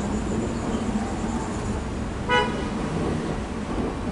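Steady low rumble with one short, pitched horn toot a little over two seconds in.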